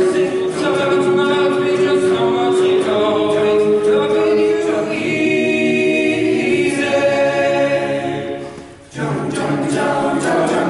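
Men's choral ensemble singing a cappella in close harmony, holding sustained chords. About nine seconds in the voices taper off for a moment at the end of a phrase, then come back in together.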